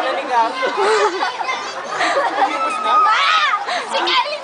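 Several people talking over one another in Filipino: close, lively chatter.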